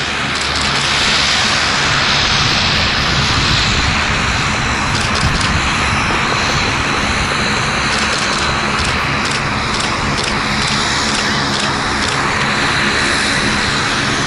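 Steady loud rushing of wind across an outdoor camera microphone, with no clear pitch or rhythm.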